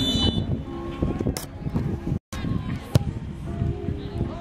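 Sideline sound at an outdoor soccer match: a busy mix of voices from spectators and the field, with some steady pitched tones and a couple of sharp knocks. The sound cuts out completely for an instant just past the middle.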